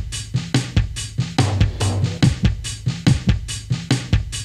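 Music with a steady, busy drum kit beat over a low bass line, and no voice.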